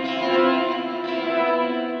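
Electric guitar played through an EarthQuaker Devices Avalanche Run delay and reverb pedal, sustained notes overlapping as the delay repeats ring on. The tone is being shaped by the delay section's tone control.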